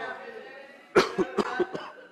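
A man coughing, a quick run of several short coughs beginning about a second in, the first the loudest.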